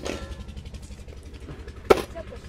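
A cleaver chopping meat on a cutting board: one sharp knock near the end. Under it, a steady low engine hum.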